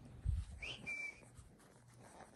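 A chihuahua gives a brief, thin, high whine about a second in: a short rising note, then a steady high tone lasting about a quarter second, over soft rustling of bedding.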